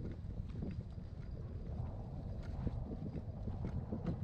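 Wind buffeting the camera's microphone, a gusty low rumble, with faint scattered ticks over it.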